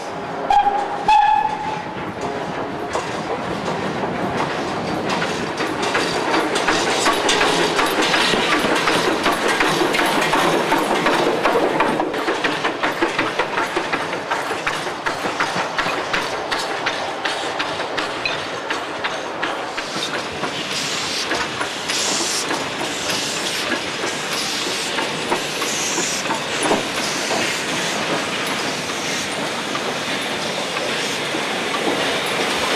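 Polish 0-8-0 tank steam locomotive No. 5485 working along the line, with a steady run of exhaust beats and wheel and rod clatter. A short steam whistle blast sounds about a second in.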